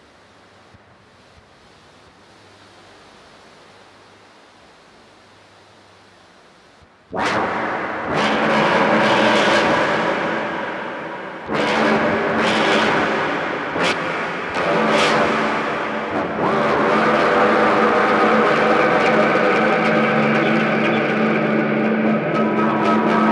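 Experimental dark ambient drone music. A faint hiss for about seven seconds, then a loud, dense, grinding noise texture cuts in suddenly over a held low drone, with abrupt jumps and breaks in the sound every second or two.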